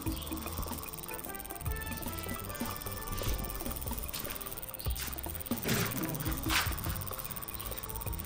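A man snoring in his sleep, with background music playing.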